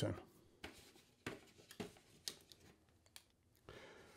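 Mostly quiet, with about six faint, short clicks and rustles spread through: fountain pens being handled on a cloth-covered surface.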